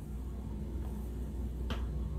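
Low steady hum with a single short, sharp click near the end.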